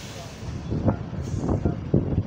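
Diesel bus engines idling at a stop, a steady low rumble, with several sharp bumps of wind or handling on the microphone in the second half.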